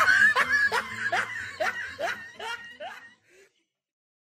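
A young man's exaggerated mock sobbing: a run of short rising cries, about two a second, that fade and stop about three seconds in.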